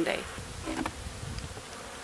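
Honey bees buzzing as they fly around the hive entrance on a warm day.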